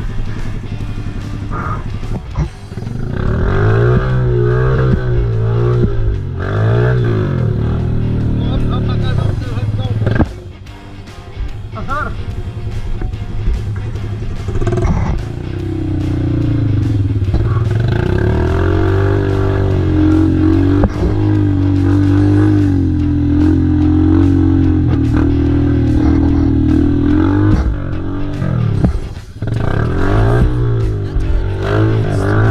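Quad bike (ATV) engine running under load on a muddy trail, its pitch rising and falling as the throttle is worked, then holding steadier through the second half. Background music plays over it.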